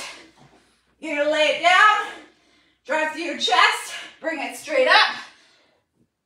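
A woman speaking: three short phrases of talk with brief pauses between them, in a small room.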